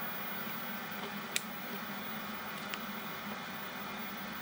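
A piano-key transport control on a Hitachi VT-6500E top-loading portable VHS recorder clicks once, sharply, about a second and a half in as PLAY is pressed, with a fainter click later. Under it runs a steady hiss with a faint hum.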